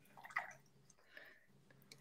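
Near silence, with two faint, short soft sounds about half a second and a second in.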